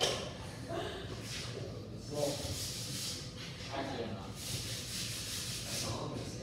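Indistinct background voices over a steady low hum, with stretches of soft hiss in the second half.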